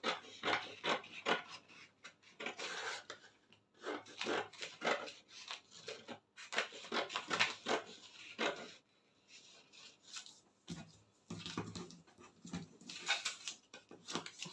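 Scissors snipping through a paper sewing pattern: a quick, uneven run of cuts, a pause of about two seconds past the middle, then more cuts to finish.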